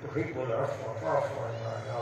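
A man's voice over a public-address system, chanting an Arabic supplication in long, drawn-out wavering tones, over a steady low hum.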